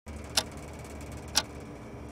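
A clock ticking, two sharp ticks a second apart, over a faint low steady hum.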